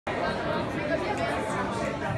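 Crowd chatter: many people talking at once in a large indoor room, with no single voice standing out. It cuts in abruptly at the very start.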